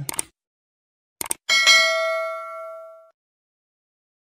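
Two quick clicks, then a single bell ding with several ringing tones that dies away over about a second and a half: the sound effect of a subscribe-button and notification-bell animation.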